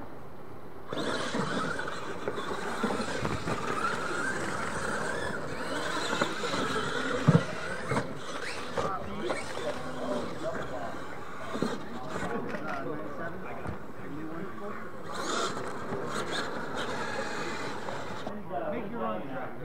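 Radio-controlled monster trucks launching and racing over a dirt track, their motors and drivetrains whining and running steadily from about a second in. A sharp thump about seven seconds in, typical of a truck landing off a ramp.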